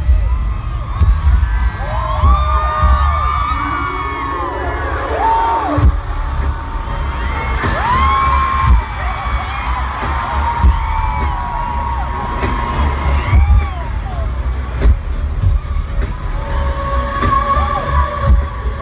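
Loud live pop music played through a stadium PA and recorded on a phone: a heavy pulsing bass beat under a gliding melody line.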